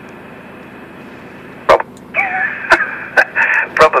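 An FM amateur repeater transmission heard through a mobile ham radio transceiver's speaker. The squelch opens on a steady carrier hiss, there is a sharp click about 1.7 seconds in, and a narrow-band voice starts coming through just after two seconds in.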